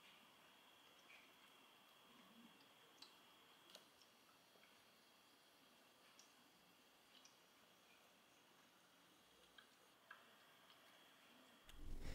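Near silence from a small Homasy cool-mist humidifier running: only a few faint ticks of water seeping down into its base, over a faint steady high tone.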